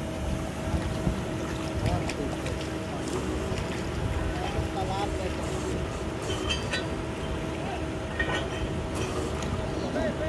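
Truck-mounted borewell drilling rig running steadily: a constant machine hum over a low rumble.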